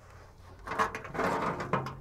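Scraping and light rattling as a loosened classic Chevy C10 wiper motor is shifted against its mounting under the dash, starting about half a second in.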